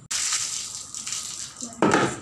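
Water poured from a plastic scoop, splashing onto a wet tiled floor as it is rinsed. A louder, shorter burst comes near the end.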